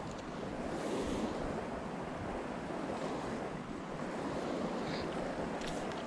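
Steady rushing noise of wind on the microphone mixed with the stream's water.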